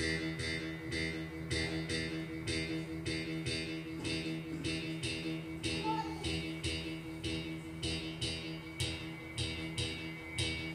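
Live band music: a drum kit keeps a steady beat, with cymbal strokes about twice a second over held, sustained chords.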